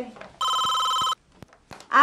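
Cordless telephone ringing: one burst of a steady electronic two-tone ring, lasting under a second, followed by a few faint clicks.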